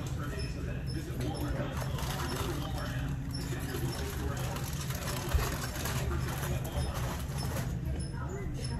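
Store ambience: indistinct distant voices over a steady low hum.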